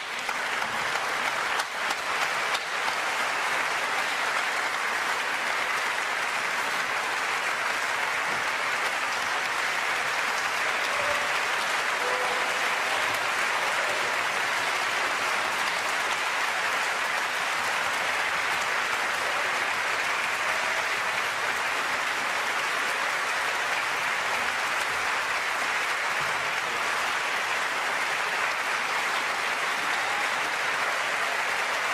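Concert-hall audience applauding, the clapping swelling over the first couple of seconds and then holding steady.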